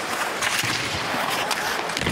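Ice hockey arena ambience: a steady wash of crowd noise with several sharp clicks and scrapes of sticks, puck and skates on the ice.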